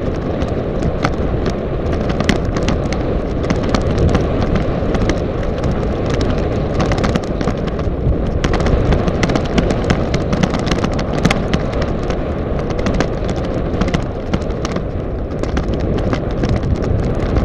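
Heavy wind buffeting on a bike-mounted camera's microphone while riding a mountain bike down a dirt track, a steady low rumble with frequent sharp clicks and rattles as the bike and camera mount jolt over the ground.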